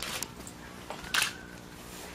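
Sheets of paper rustling and flapping as the signed agreement's pages are handled and turned, with short sharp clicks. The loudest click comes just over a second in.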